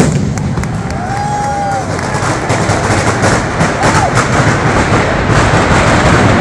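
Mascletà firecrackers going off in dense rapid succession, a continuous crackling over a deep rumble, with a few short whistles cutting through and crowd voices underneath.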